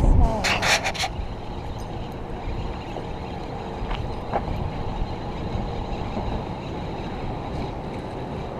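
Wind buffeting a body-worn camera's microphone: a steady low rumble, with a quick cluster of clicks or rattles about half a second in.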